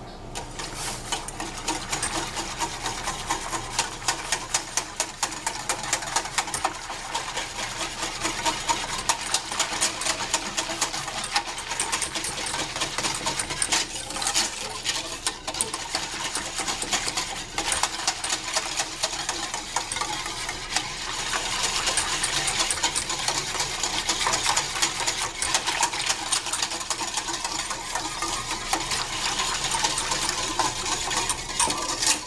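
A utensil stirring rapidly in a pot, with fast, continuous clinking and scraping against its sides, working chocolate into the heated liquid.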